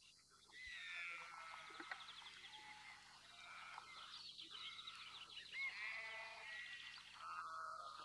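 Faint outdoor animal calls: birds singing with short chirps and quick trills, and a few longer drawn calls, about six seconds in and again near the end.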